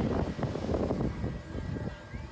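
Wind buffeting a phone's microphone as it swings around on a chair-swing carousel: a gusty, uneven low rumble.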